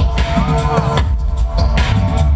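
Live electronic dub music from the stage, recorded from within the crowd: heavy bass, a beat, and a short arching pitched glide about half a second in.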